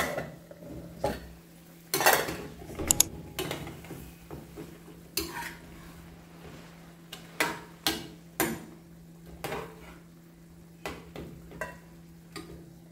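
A metal spoon stirring sliced calabresa sausage in an aluminium frying pan, scraping and clinking against the pan in a series of separate knocks, with the pan lid lifted at the start. Underneath, the sausage simmers in its water and rendered fat.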